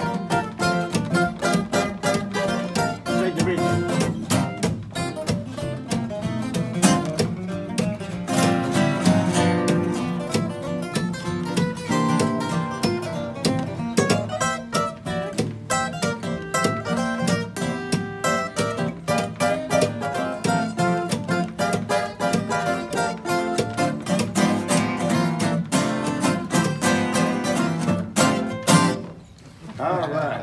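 Four acoustic guitars playing together in a jam, dense picked notes over strummed chords. The tune ends on a final strum about a second before the end, after which the playing stops.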